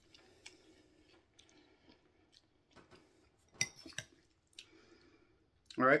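Quiet eating sounds: ramen noodles slurped and chewed, with a metal fork clicking against the bowl a few times, the sharpest click just past the middle.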